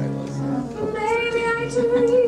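A woman singing with piano accompaniment, moving into a long held note with vibrato about a second in.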